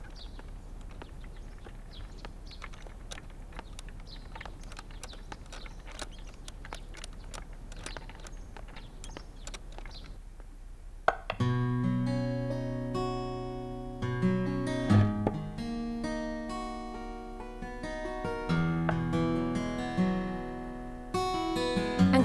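Faint outdoor ambience with scattered clicks and bird chirps, then about halfway in a soft acoustic guitar music cue starts with a sudden pluck and carries on as a run of plucked, ringing notes.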